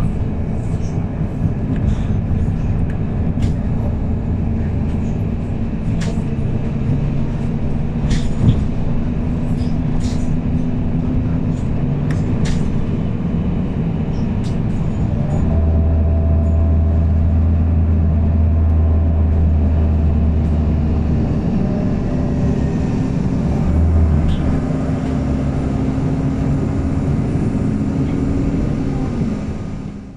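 Inside a MAN 18.310 HOCL-NL compressed-natural-gas city bus with a Voith D864.4 automatic gearbox: the engine and drivetrain give a steady low drone, with scattered sharp clicks in the first half. About halfway through, a stronger low hum holds for around six seconds, and the sound fades out at the very end.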